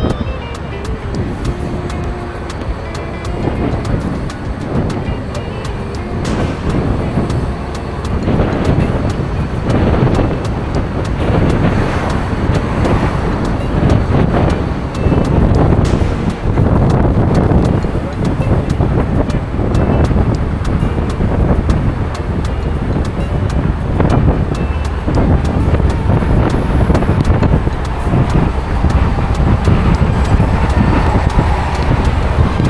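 A car driving along a road, heard from inside with road and wind noise. Irregular gusts of wind hit the microphone, and the noise grows louder from about a third of the way in.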